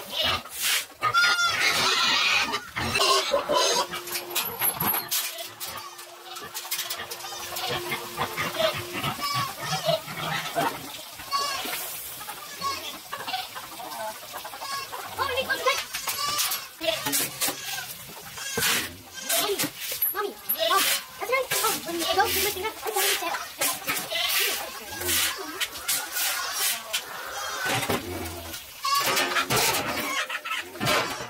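Goats and chickens calling in a barnyard, over repeated knocks and rattles of feed being scooped and plastic buckets being handled.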